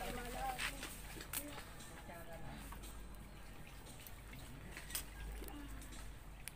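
Quiet outdoor background with faint distant voices and a few isolated sharp crackles from a small wood fire.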